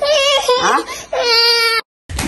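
Toddler crying in two long, high wails with a short break between them; the second wail cuts off suddenly near the end.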